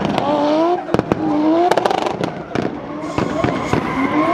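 Turbocharged 1JZ inline-six in a BMW E36 drift car revving hard again and again while sliding, each rev rising in pitch, with many sharp pops and cracks in between.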